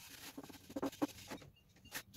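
Cloth rag rubbing wood stain into a wooden frame: a series of short scratchy wiping strokes, loudest about a second in.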